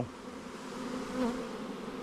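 A swarm of honey bees buzzing in a low, even hum.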